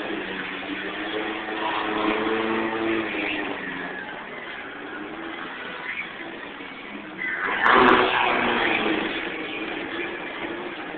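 Car engines revving hard as cars spin on asphalt, the pitch climbing and changing in the first few seconds, then dropping back. A loud rushing burst of noise comes near the end.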